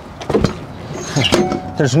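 Latch handle on a Prevost motorcoach's luggage bay door being turned to lock the shut door down. There is a solid clunk about half a second in, then a few lighter metal clicks about a second later.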